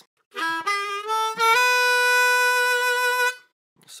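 Blues harmonica playing a short phrase: a few quick notes stepping upward, then one long held note that stops a little before the end.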